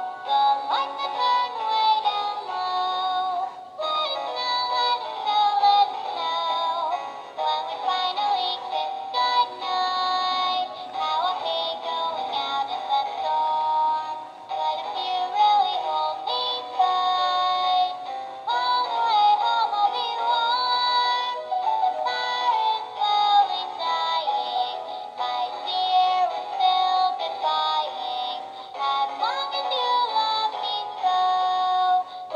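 Animated plush snowman Christmas toy playing a song through its small built-in speaker: a tinny, electronic-sounding voice singing over music, thin and without bass.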